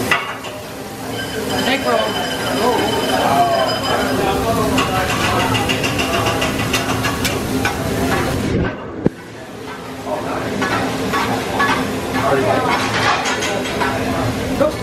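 Hibachi steel griddle with food sizzling and metal spatulas clinking and scraping on it, over steady restaurant chatter. The sound breaks off sharply just before nine seconds in and comes back a little quieter.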